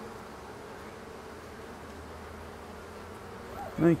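Honey bee swarm buzzing: a steady, even hum from thousands of clustered bees.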